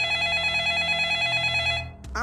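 Mobile phone ringing with a warbling electronic ringtone, held at an even level and cutting off just before the end.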